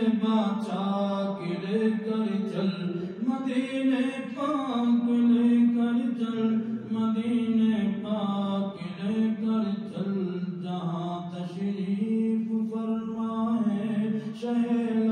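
A man chanting an Urdu naat solo, without instruments, in long, gliding melodic phrases.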